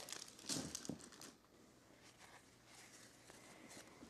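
Crinkling of a bias-tape package's plastic wrapping as it is opened, in the first second and a half, followed by faint rustles as the tape is unwound.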